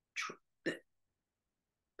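A woman's voice in two short clipped sounds, the word "the" among them, then dead silence from about one second in.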